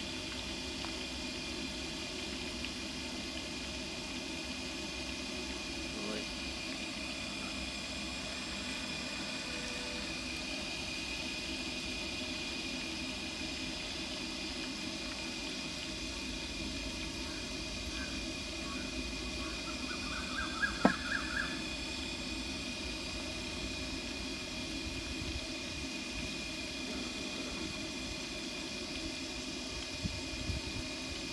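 Hot oil sizzling steadily as goat legs deep-fry in a large iron kadai. About twenty seconds in comes a brief clatter and one sharp knock, the loudest sound.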